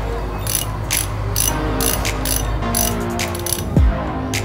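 Hand socket ratchet clicking in a steady rhythm, about two clicks a second, as it is worked back and forth on a nut at the cylinder head of a small scooter engine.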